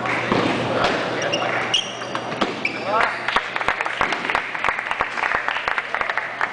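Table tennis balls clicking sharply and irregularly on bats and tables, most densely in the second half, over the chatter of a crowd.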